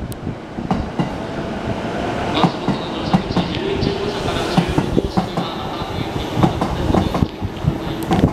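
JR East E233-series electric commuter train running on the tracks, its wheels clicking over rail joints in a quick, uneven patter, with a faint steady motor whine in the middle.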